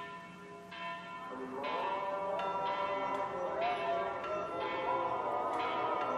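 Bell tones struck one after another at a slow, even pace, with a gliding melody line joining about a second in, as the opening of a soundtrack.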